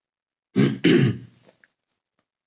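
A man clearing his throat in two quick pushes, a short one about half a second in and a longer, louder one just after.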